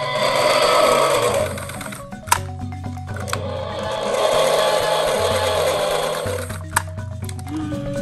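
Two T-Rex roars, a short one and then a longer one of about three seconds, over background music with a stepping bass line.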